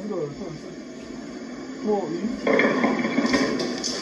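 Faint voices, joined about two and a half seconds in by a louder steady hiss of noise.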